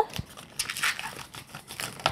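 Inflated 260 latex twisting balloon rubbing and squeaking under the hands as a bubble is squeezed off and twisted, in short irregular scratchy squeaks.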